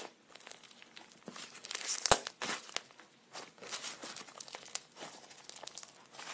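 Butter slime, slime mixed with soft clay, being squeezed and stretched between fingers, giving irregular soft crackles, with one sharper, louder click about two seconds in.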